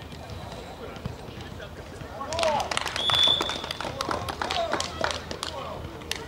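Football players' shouts on an outdoor pitch, with a scatter of sharp smacks from about two seconds in and a short, steady referee's whistle about three seconds in.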